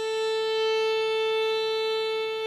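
Violin bowing a single long, steady A, given as a tuning reference note for players to tune to.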